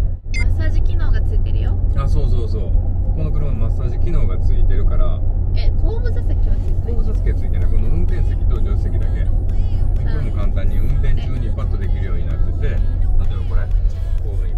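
Steady low rumble of a Mercedes-Benz G400d under way, heard from inside the cabin, with conversation over it and background music.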